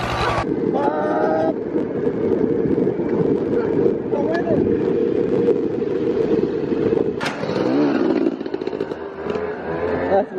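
Dirt bike riding along a bush road, its engine running under a steady, heavy rumble of wind on a moving microphone. A brief voice is heard about a second in.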